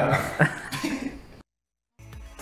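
Men laughing, a short burst of chuckles with a sharp catch of breath that tails off, then the sound cuts to dead silence for the last half second.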